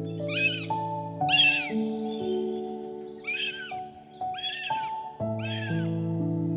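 Bald eagle calling: five short, high, squealing calls with a falling inflection, spaced unevenly over several seconds, the second the loudest, over soft background music.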